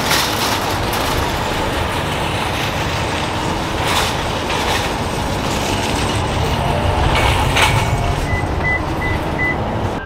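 Shopping cart's wheels rolling and rattling steadily across parking-lot asphalt, with a few louder clatters. Four short high beeps sound near the end.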